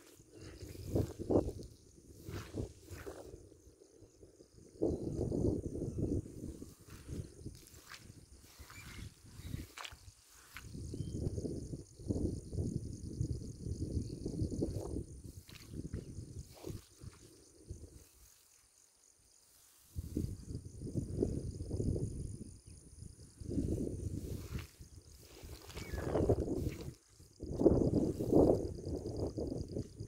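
Open-field outdoor ambience: stretches of low rumbling noise on a handheld microphone come and go, each lasting a second or more, with a short lull about two-thirds of the way through. A steady faint high hiss runs underneath.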